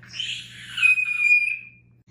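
A child's shrill, high-pitched scream, starting rough and then held as one long steady note for about a second before it fades out.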